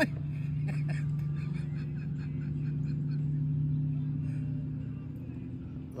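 A steady low motor hum holding one even pitch throughout, the sound of a boat motor running on the water.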